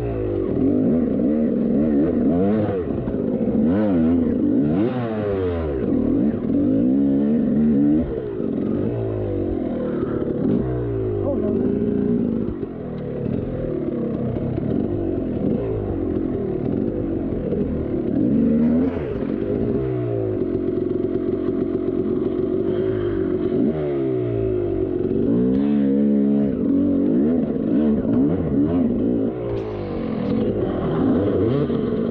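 KTM two-stroke dirt bike engine revving up and down, its pitch rising and falling every second or two as the throttle is worked on rough trail.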